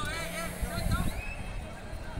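Voices shouting during a kabaddi raid. A quick run of high, arching cries comes at the start, then a steady held voice-like tone.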